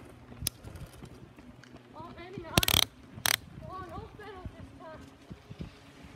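Indistinct voices with a few sharp knocks, and two loud brief bursts of noise about two and a half and three and a quarter seconds in.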